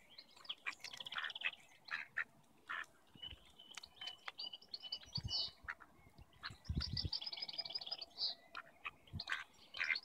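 Small birds chirping, with quick trilled runs of high notes about a second in and again around seven seconds, over scattered clicks and a few low thumps.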